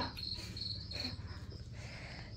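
Insects chirping in the background: a high, pulsing trill, strongest in the first second, over a faint steady low hum.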